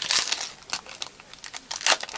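Foil wrapper of a Japanese Pokémon card booster pack being torn open by hand, crinkling as it goes; the seal tears easily, "like butter". The loudest crinkles come right at the start and again shortly before the end.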